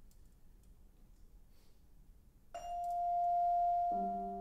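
Quiet room tone, then about two and a half seconds in a single vibraphone note is struck and left ringing as one steady, bell-like tone.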